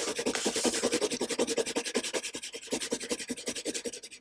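Pencil on paper: quick, steady back-and-forth shading strokes, scratching as a solid black area is filled in with graphite.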